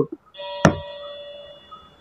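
A bell-like ringing of several steady tones with one sharp tap a little over half a second in, fading away over the following second.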